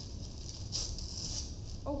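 Paper rustling as a card and wrapping paper are handled, a short hissy crinkle in the middle, over a steady low hum.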